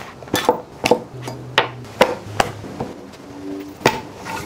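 Canvas knife roll set down and handled on a wooden butcher-block table, the knives inside knocking and clinking against each other and the wood in a series of sharp separate clicks.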